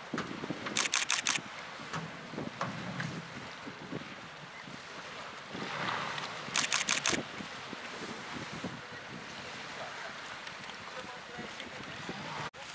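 Two quick bursts of camera shutter clicks, four or five clicks each, about a second in and again just past the middle, over wind on the microphone and indistinct voices.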